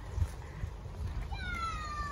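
A gull's single drawn-out call, falling slowly in pitch and dipping at its end, starting about one and a half seconds in over a low rumble of wind on the microphone.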